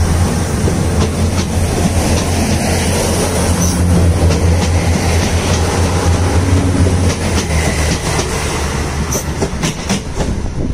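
NI Railways Class 3000 diesel multiple unit running past at close range and pulling away: a steady low drone from its diesel engines, with the rumble of wheels on the rails. The drone eases about nine seconds in as the rear passes, and a few sharp wheel clicks over rail joints come near the end.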